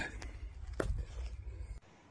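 Low rumble and handling noise from a hand-held microphone, with a couple of faint clicks, cutting off suddenly just before the end.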